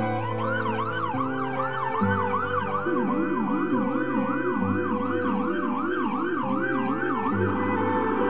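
Ambulance siren in a fast yelp, sweeping up and down about three times a second. A second, lower yelp joins about three seconds in. Held musical chords that change every second or two sound beneath them.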